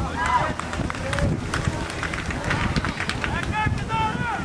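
Young football players calling and shouting to each other on the pitch in several short, high shouts, with low wind rumble on the microphone.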